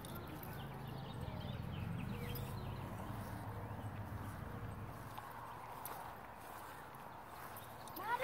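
Soft footfalls and rustling on a grass lawn with a low rumble from a hand-held phone being carried and jostled. The rumble is strongest in the first half and eases off toward the end.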